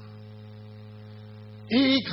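Steady electrical mains hum in the recording, a low buzz of several even tones heard through the microphone line during a pause. A man's voice cuts back in near the end.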